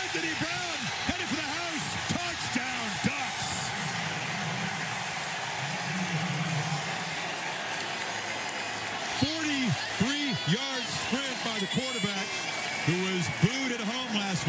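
Stadium crowd noise under a broadcast, with a man's voice speaking over it near the start and again in the last few seconds.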